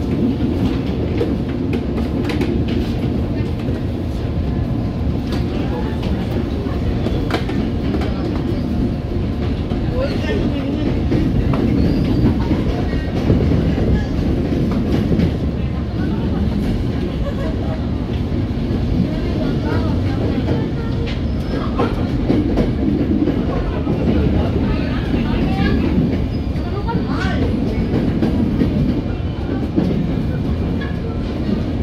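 Tokyo Metro 05 series electric commuter train heard from inside the car, rolling at speed: a steady rumble of wheels on rail, with sharp clicks as the wheels pass over rail joints and switches.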